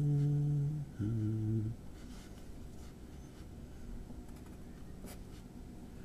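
A man humming two sustained low notes, the second a step lower, then the faint scratch of a pencil writing music notation on paper.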